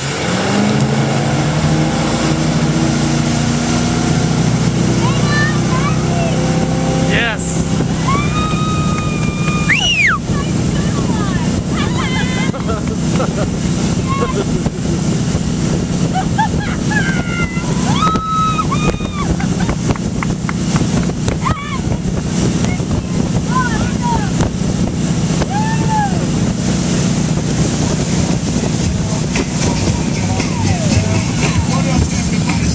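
Towboat engine opened to full throttle as the boat pulls two skiers up from a deep-water start, then running hard and steady, with water rushing along the hull and wake. Short high-pitched shouts come and go throughout.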